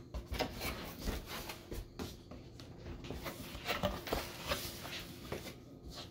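A small knife slicing along packing tape on a cardboard box, with irregular scraping, rustling and small clicks of the cardboard as the tape gives and the flaps are worked open.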